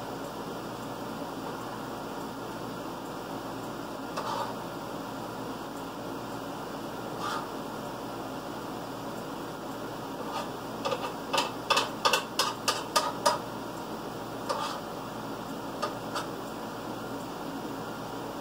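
Steady background hum in a small kitchen, with dishes and utensils clinking and knocking at the counter: a few single clicks early on, then a quick run of about ten sharp clicks a little past halfway, and a few more after.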